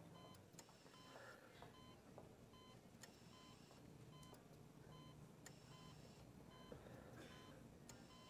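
Near silence with the faint, regular beeping of a hospital patient monitor.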